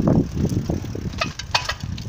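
Handling noise on a phone's microphone as it is swung about: low rumbling surges, then a few sharp clicks and knocks about a second and a half in.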